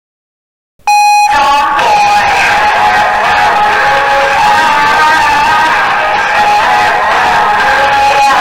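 Silence, then a K-pop song cuts in abruptly less than a second in and plays on at full volume, with a long held note.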